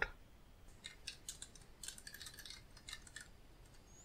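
Faint, scattered light clicks of a computer mouse and keyboard, a string of small ticks starting about a second in and stopping about a second before the end.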